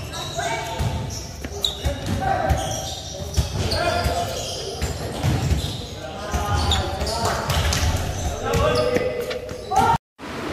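A basketball bouncing on a concrete gym court, short sharp knocks among indistinct voices echoing in a large hall.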